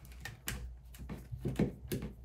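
Small Phillips screwdriver backing out the screw under an ADT Command alarm panel: a few light, irregular clicks and scrapes of metal on the screw and plastic housing.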